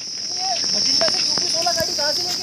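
Insects chirring steadily in one high, even tone, with faint voices in the distance and a few light clicks.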